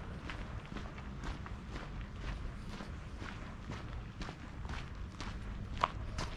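Footsteps of a walker on a cobblestone street, about two steps a second, each a short crisp tap, over a steady low rumble. One step near the end is louder than the rest.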